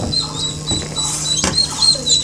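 Young chicks peeping: a quick run of short, high cheeps, several a second, over a steady low hum, with a few sharp knocks.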